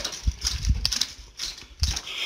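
Handling noise and footsteps from someone walking down a carpeted hallway while holding the camera: a few soft, irregular low thumps mixed with brushing and rustling.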